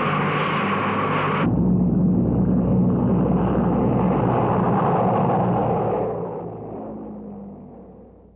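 Lockheed C-130 Hercules turboprop engines running on the ground: a steady high whine over the engine roar, then, about a second and a half in, a sudden change to a deeper drone that fades away over the last two seconds.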